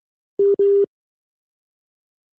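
Telephone line beep: one steady mid-pitched tone, broken into two short pulses about half a second in.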